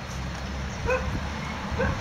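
Short, high-pitched animal yelps, one about a second in and a quick run of three or four near the end, over a low steady hum.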